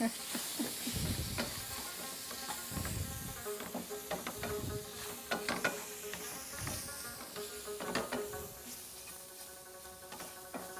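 Chicken slices sizzling in a metal frying pan on a gas burner while a wooden spatula stirs and scrapes them around the pan, with repeated sharp knocks of the spatula against the pan.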